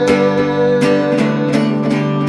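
Acoustic guitar strummed in a steady rhythm, about two to three strokes a second, with chords ringing on between the sung lines of a worship song.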